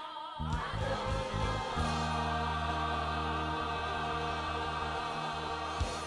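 Choral gospel music: voices with a low accompaniment settle into one long held chord over a steady bass note, which stops just before the end.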